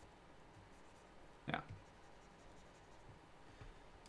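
Faint scratching of a drawing tool on paper as a sketch is worked on, in a quiet small room.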